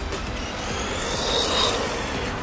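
WLtoys 104009 radio-controlled off-road car running on concrete: electric motor whine and tyre noise, swelling about a second in with a brief thin high whine, over background music.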